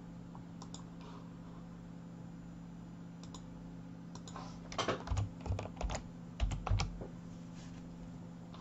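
Computer keyboard typing: a quick run of about ten keystrokes between about four and a half and seven seconds in, entering a dimension value in CAD software, over a faint steady hum.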